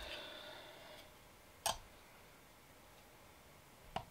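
A single light tap as a plastic weighing tray is set on a digital pocket scale, then two small clicks near the end as the scale's button is pressed to tare it.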